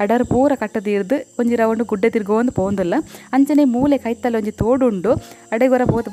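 A woman talking in Tulu, with a steady high-pitched insect drone behind her voice.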